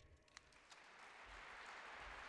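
Faint audience applause that starts about a second in and slowly builds.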